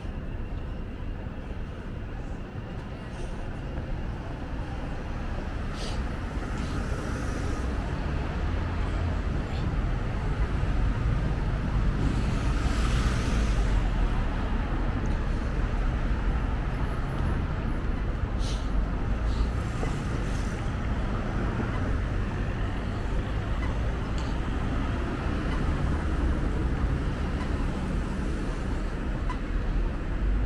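City street traffic: a steady rumble of cars and vans passing, swelling loudest about twelve to fourteen seconds in, with a few brief clicks.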